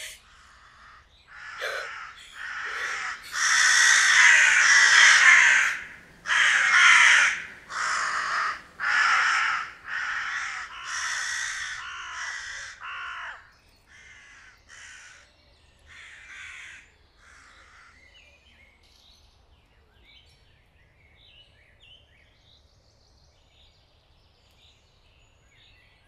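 Crows cawing: a dense, loud stretch of harsh caws early on, then single caws about once a second that grow fainter and die away, leaving only faint small bird chirps.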